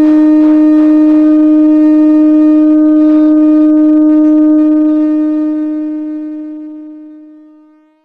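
Conch shell (shankha) blown in one long, steady note, fading away over the last three seconds. Faint percussion strikes sound under it in the first few seconds.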